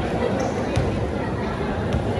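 Spectator crowd chatter in a basketball gym, a continuous babble of many voices, with two short sharp knocks, one under a second in and one near the end.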